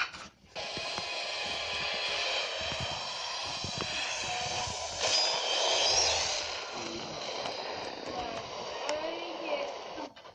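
Movie soundtrack from an action scene: music and sound effects starting about half a second in, swelling to their loudest around five to six seconds in, with a few brief voices near the end.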